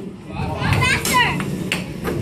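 Air hockey being played: a plastic mallet knocking the puck across the table, with a sharp clack near the end, under children's voices.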